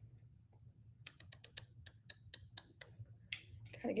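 Fingernails tapping on a smartphone's touchscreen: a quick, irregular run of faint clicks, several a second, from about one second in until a little past three seconds.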